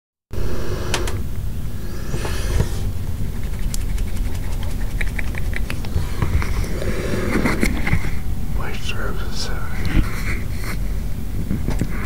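Muffled talking in a small room over a steady low rumble, with scattered clicks and knocks; no drums are played.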